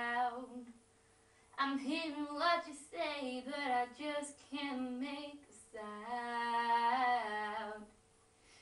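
Teenage girl singing unaccompanied: a few sung phrases with a short pause about a second in, ending in a long held note near the end.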